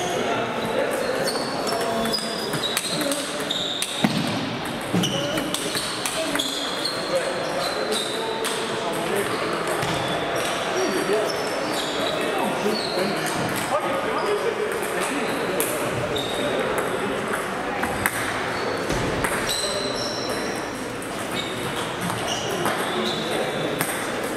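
Table tennis balls ticking off bats and tables in irregular rallies across several tables, with a brief high ping on many of the bounces. The hits ring in a large, echoing sports hall over a steady murmur of voices.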